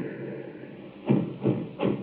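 Radio-drama sound effect of a mortar barrage: a faint hiss, then three sudden shell bursts in quick succession starting about a second in, the first the loudest.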